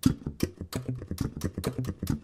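Electric bass played with the double-thumb slap technique: rapid, even thumb strokes down and up, crossing between the A, D and G strings. Each note starts with a percussive click.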